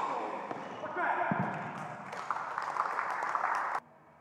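Tennis ball struck by a racket right at the start, then the ball bouncing on an indoor hard court with voices echoing in a large hall. The sound cuts off abruptly near the end.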